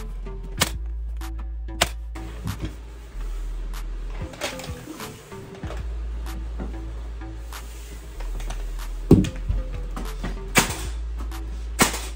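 Background music with a bass line, over which a few sharp, irregularly spaced shots of a nail gun fastening wooden door casing ring out, the loudest about nine seconds in.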